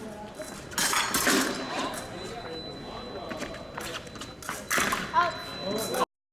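Épée blades clicking and clashing and fencers' feet stamping on the piste in two quick flurries, about a second in and again near five seconds, with voices in the hall.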